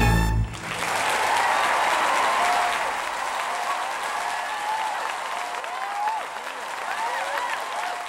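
A loud musical number ends on a final chord about half a second in, and a theatre audience applauds and cheers.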